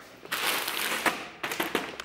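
Rustling handling noise for about a second, followed by a few sharp clicks.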